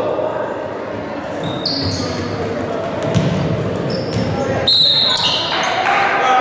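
Basketball bouncing on a hardwood gym floor over indistinct crowd chatter echoing in the hall, with short high squeaks about two seconds in and again near the end.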